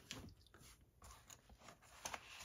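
Near silence, with a few faint taps and rustles of handling just after the start.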